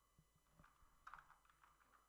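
Faint computer keyboard keystrokes: a few scattered clicks, with a quick cluster about a second in.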